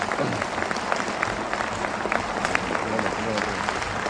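Applause from members of a parliament: many people clapping at a steady level, with voices mixed in.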